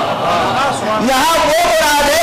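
A man's voice at the microphone, with long drawn-out pitched syllables and a brief lull in the first second.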